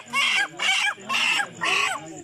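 A chicken held by its wings squawking loudly, four harsh calls about half a second apart, as it is handled for slaughter.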